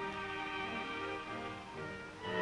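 Dance band playing a tango, with violins carrying the melody in held notes.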